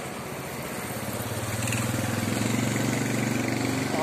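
A small motorcycle engine running as it comes closer, growing louder from about a second in and holding steady near the end.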